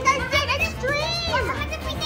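Young girls' voices cheering and exclaiming excitedly, high-pitched and without clear words.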